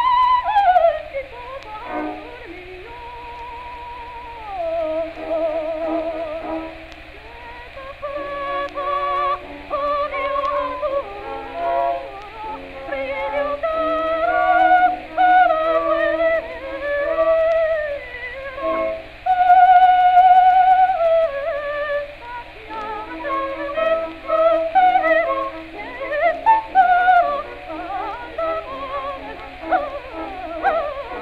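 Soprano singing an ornamented bel canto aria, with a wavering vibrato and quick runs of notes over lower held accompaniment, on an early acoustic recording. The sound is thin and narrow, with a steady low hum beneath it.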